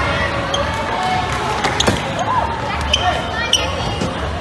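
Dodgeballs striking the floor and players, four or five sharp slaps in quick succession around the middle and one more near the end, over steady shouting and chatter from players and spectators.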